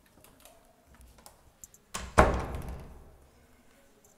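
A door shutting with a single loud thud a little over two seconds in, dying away over about a second, after a few faint clicks.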